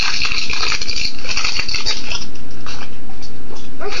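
Christmas wrapping paper crinkling and tearing in irregular crackly bursts as a present is ripped open.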